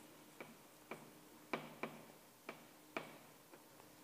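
Chalk tapping on a blackboard while writing: about seven short, faint taps at irregular spacing.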